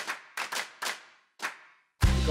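A short run of about five sharp percussive hits at uneven spacing, each ringing briefly before dying away, with the last one set apart near the end.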